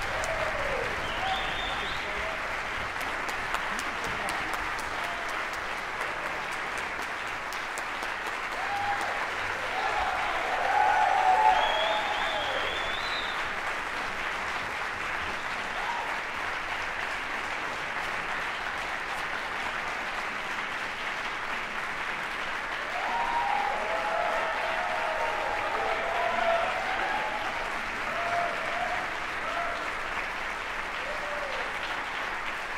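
Concert-hall audience applauding steadily after a performance. Voices call and cheer above the clapping, loudest around a third of the way in and again about three quarters through.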